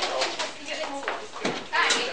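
Overlapping chatter of several people talking at once in a room. It is broken by a few sharp handling knocks and a short, louder rasping noise near the end.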